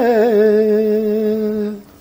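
A man singing unaccompanied, ending a sung phrase on one long, low held note that wavers briefly at first and then fades out near the end.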